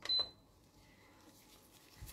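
A sharp click and a short high-pitched electronic beep at the very start, lasting about a quarter of a second.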